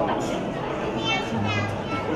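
Guests chattering, with a high-pitched voice calling out in rising and falling squeals through the second half.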